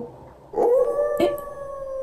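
A person imitating a wolf howl, 'aoo': one long, steady held note starting about half a second in.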